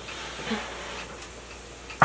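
Wild greens, morel mushrooms and cherry tomatoes cooking in a frying pan: a quiet, even sizzle with a few faint ticks.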